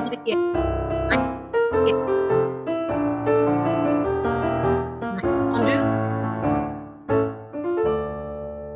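Piano playing an accompaniment for a ballet class exercise, a run of notes and chords that closes on a held chord near the end.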